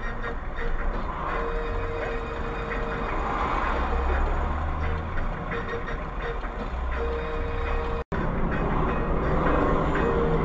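Driving noise heard inside a car, a low engine and road rumble, with a steady mid-pitched tone that comes and goes for a few seconds at a time. The sound drops out for an instant about eight seconds in.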